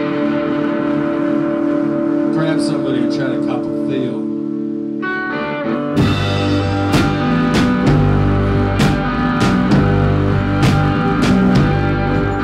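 Live rock band: electric guitar holding ringing, sustained chords, then about halfway through the drum kit and bass guitar come in and the full band plays with a steady beat.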